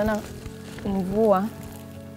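A woman's voice speaking in short phrases, once at the start and again about a second in, over soft background music.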